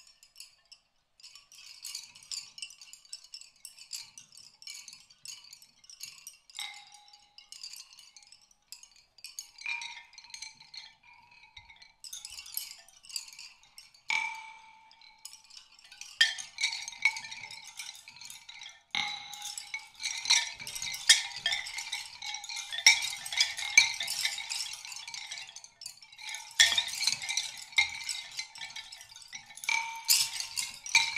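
Live percussion: a sparse, chime-like clicking and rattling, broken by single struck ringing notes every few seconds. About halfway through it becomes much louder and denser.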